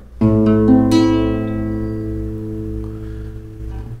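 Nylon-string classical guitar sounding an A minor chord: its strings are plucked one after another within about the first second, then left to ring and slowly fade.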